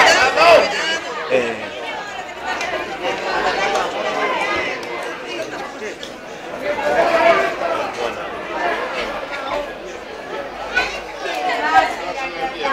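Several people chattering at once, overlapping voices of football spectators, louder at the start and again about seven seconds in.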